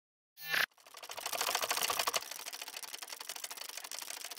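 Logo-intro sound effect: a short burst about half a second in, then a dense run of rapid clicks that is loudest over the next second or so and thins toward the end.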